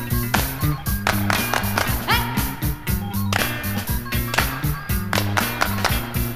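Instrumental intro of a 1960s beat-music record: electric guitar and bass guitar over a steady drum beat, with no vocals yet.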